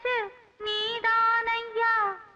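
A high female singing voice from a Tamil film song, sung in held notes with little accompaniment. A phrase slides down in pitch and stops, a new phrase starts after a brief pause about half a second in, and it slides down again near the end.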